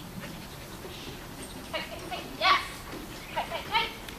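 A dog giving short, high-pitched barks while working around an agility jump: a single bark, a louder one, then a quick run of three.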